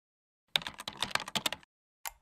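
Computer keyboard typing sound effect: a quick run of rapid key clicks lasting about a second, starting about half a second in.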